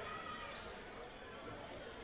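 Faint gymnasium ambience at a stop in play: distant crowd chatter with a basketball bouncing on the hardwood floor, as before a free throw.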